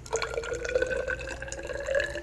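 Potassium chloride solution poured from a plastic bottle into a narrow glass test tube: liquid splashing into the tube with a ringing tone that rises slightly in pitch as the tube fills.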